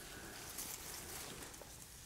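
Faint rustling and light crackle of potting soil and fibrous roots as a Chamaedorea palm's root ball is worked apart by hand, with a few small ticks scattered through it.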